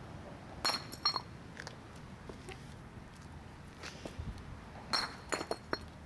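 Pieces of brick striking a concrete sidewalk: sharp, clinking impacts with brief ringing, two about a second in and a quick cluster of several near the end as chips bounce and scatter.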